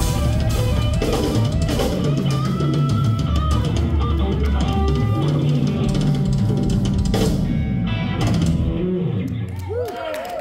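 Live blues-funk band playing instrumentally: electric guitar lines over electric bass and drum kit. The cymbals drop out about seven and a half seconds in and the band thins out near the end.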